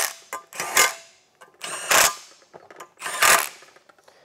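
Ratchet tightening the 10 mm bolts that hold an ARB twin air compressor to its mounting bracket: three short bursts of rapid ratcheting clicks, about a second and a quarter apart.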